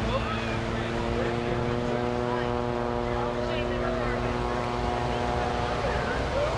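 Engines of the jet-equipped Waco taperwing biplane in a smoke-trailing dive, a steady drone holding one pitch.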